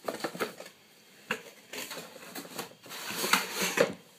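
Cardboard box and packaging being handled and rummaged through: a string of small irregular clicks, taps and scrapes, loudest near the end.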